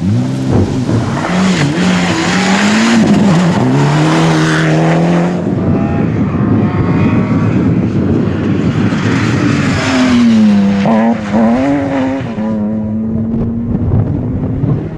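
Rally car engines at full throttle, the revs climbing and dropping through gear changes as a car passes. From about six seconds a BMW E36 rally car comes through the corner with quick lift-offs and shifts, then its engine note holds steady as it pulls away.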